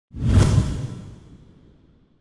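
Whoosh sound effect with a deep boom: it swells in and peaks sharply just under half a second in, then fades away over about a second and a half.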